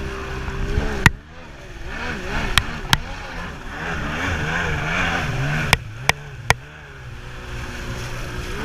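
Stand-up jet ski's two-stroke engine revving up and down in short repeated swells as it rides over the water, with water rushing and spraying. Six sharp knocks stand out: about a second in, twice near three seconds, and three between five and a half and six and a half seconds.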